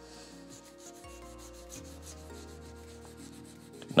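A rag rubbing spirit stain into a rosewood fretboard in repeated soft wiping strokes.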